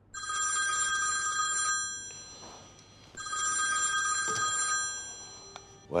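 Old-fashioned desk telephone bell ringing twice, each ring about a second and a half long and about three seconds apart, then a short clunk near the end as the handset is lifted.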